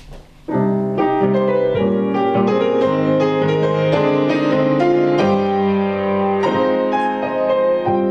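Grand piano starting about half a second in and playing on with chords and melody: the solo piano introduction to a romance, before the voice enters.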